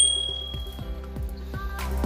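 Gentle instrumental background music, with a short bright ding at the very start that rings for under a second, the sound effect of an on-screen subscribe-button animation. The music grows louder near the end.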